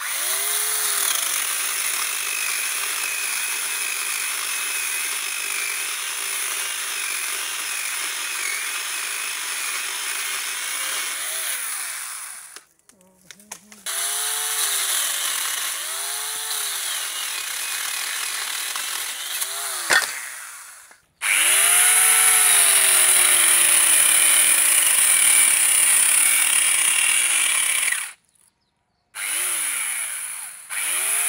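Angle grinder converted into an electric chainsaw with a bolt-on bar and chain, its motor running while the chain cuts through a tree branch. The motor's pitch repeatedly sags and recovers as the chain bites into the wood, and the sound breaks off briefly a few times. A single sharp crack comes about two-thirds of the way through.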